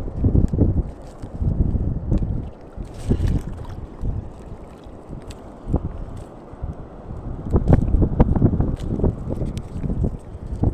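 Wind buffeting the microphone: a low rumble that swells and fades in gusts, strong near the start, easing in the middle and rising again near the end, with a few sharp clicks.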